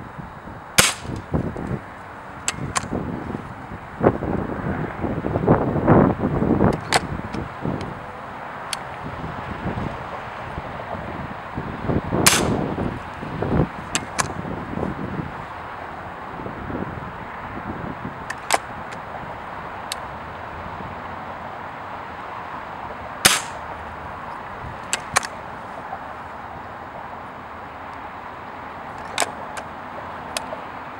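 Pellet gun shots: three sharp cracks about ten seconds apart, with quieter clicks and knocks between them and stretches of low rumbling noise.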